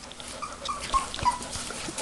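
Young Stabyhoun puppies whimpering, about five short squeaks spread over two seconds.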